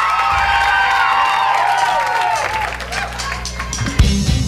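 Studio audience cheering and whooping. A steady low drone runs underneath from about a third of a second in.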